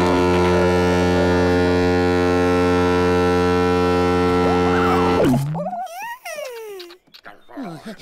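A boat's horn blasting one loud, steady, low note for about five seconds, then cutting off with a short sliding drop. A few short, wavering, gliding voice-like sounds follow.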